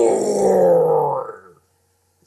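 A man's voice giving a long, strained roar for a cartoon monster, falling in pitch and breaking off about a second and a half in.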